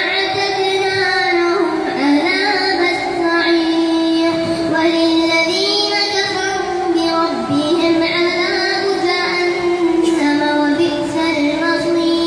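A young boy reciting the Quran aloud in a melodic chant into a microphone, leading congregational prayer as imam, holding long notes with ornamented turns between them.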